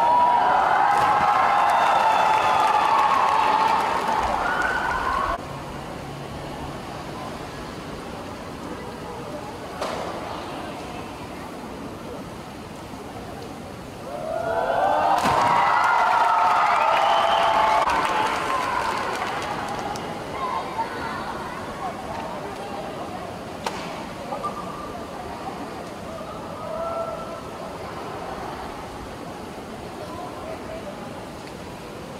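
Spectators cheering and shouting in high voices, in two bursts: one lasting about five seconds and cutting off suddenly, and another about fifteen seconds in; between them the crowd noise drops to a lower background hubbub.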